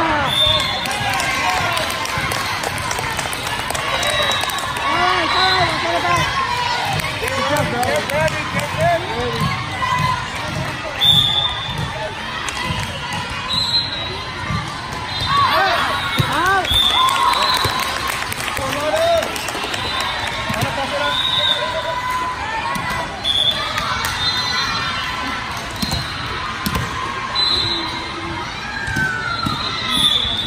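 Sound of a busy indoor volleyball hall: volleyballs being struck and bouncing off the floor again and again, with many short squeaky chirps and a steady babble of players' and spectators' voices echoing in the large hall. The loudest single hit comes about 11 seconds in.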